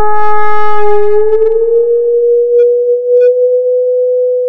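Electronic sine-wave tones in a free improvisation: a loud, sustained low tone that glides slightly upward in pitch about a second in, with higher tones stacked above it that fade away by the middle, then two short high blips near the end.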